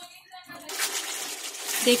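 Steel ladle stirring raw-mango pieces in a sugary masala gravy in a steel kadhai, with the cooking pan sizzling; the hiss sets in about two-thirds of a second in.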